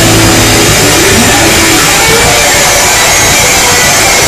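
Rock band playing live and loud, with electric guitars and drums, at a steady level.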